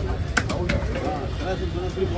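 Cleaver chopping fish on a wooden log block: two sharp chops close together about half a second in.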